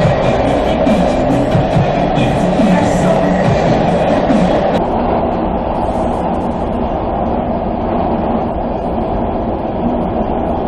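Subway train running, a steady rumble and hum inside the car. For about the first five seconds music from a portable speaker plays over it. Then the sound cuts abruptly to the train's running noise alone.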